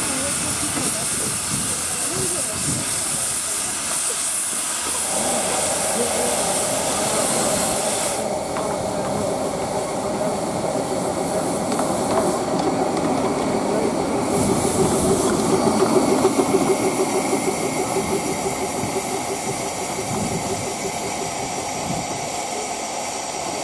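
Severn Lamb 0-6-2 narrow-gauge steam locomotive hissing steam as it starts away. The loud hiss drops off about eight seconds in and returns a few seconds later, with the working locomotive heard underneath.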